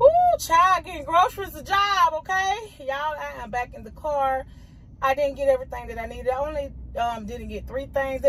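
A woman talking to the camera; speech only.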